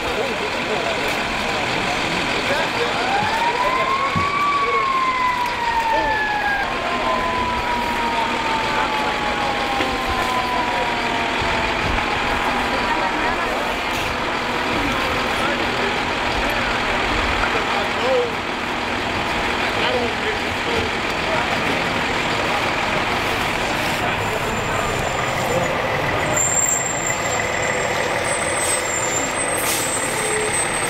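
Steady drone of fire apparatus engines running at the scene. A few seconds in, a siren wails up once and then slowly down.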